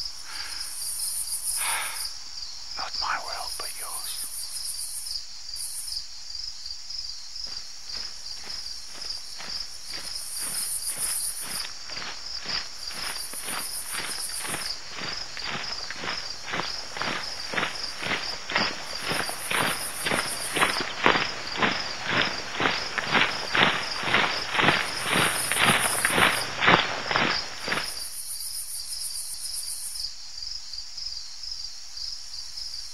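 Crickets and other night insects chirring steadily while footsteps approach at about two steps a second, growing louder until they stop abruptly near the end.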